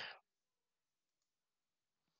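Near silence, with a faint computer mouse click.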